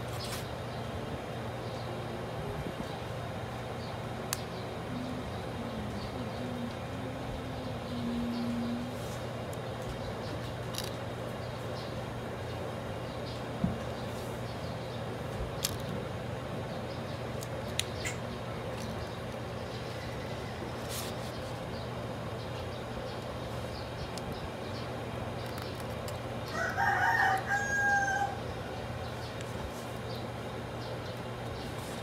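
A bird call near the end, about a second and a half long with a held tail, the loudest sound here. Under it a steady low hum and a few light clicks from handling the phone as its screen is pressed into place.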